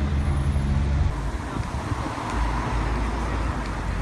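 Street traffic: a vehicle engine idling with a steady low hum that cuts off abruptly about a second in, then the even noise of passing road traffic.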